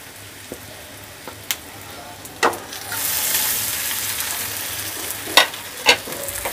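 Eggplant slices frying in a little oil in a nonstick frying pan; about three seconds in, the sizzle grows louder as more slices go into the hot pan. A few sharp clicks of a utensil against the pan sound through it.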